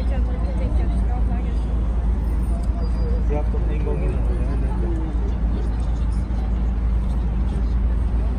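Outdoor city ambience: a steady low rumble of street noise, with faint voices of passers-by in the middle.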